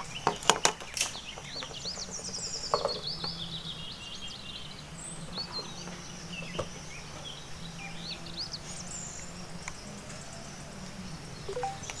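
Wild birds chirping and calling throughout, with a few sharp clicks in the first second or so as a charger plug and cable are handled, over a low steady hum.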